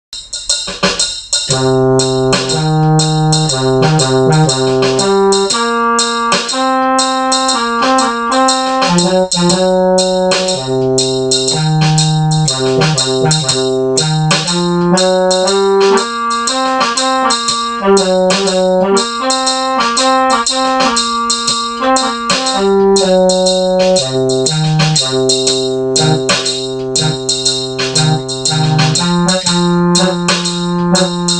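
Electronic keyboard playing a simple blues in the key of C, held chords changing over a steady drum beat, starting about a second in.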